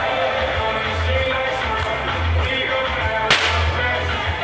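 A single sharp whip crack about three seconds in, over music playing throughout with a heavy bass.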